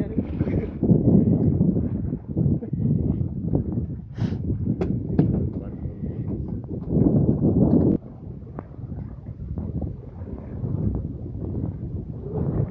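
Wind buffeting the microphone on an open boat, a rough low rumble that swells and falls, with muffled voices and a few sharp clicks near the middle. The wind noise drops off suddenly about two-thirds of the way through.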